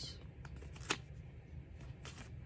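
Sticker sheets rustling and sliding against each other as they are shuffled in the hands, with a sharp tick about a second in.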